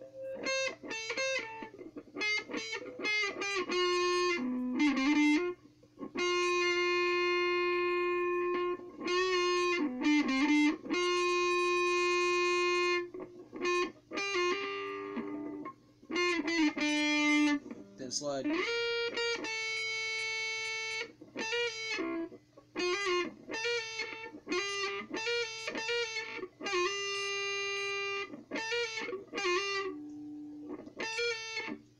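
Electric guitar playing a lead solo note by note, with pauses: runs of single picked notes, several long held notes, a slide down about halfway through and a slide up a few seconds later, over a steady low hum.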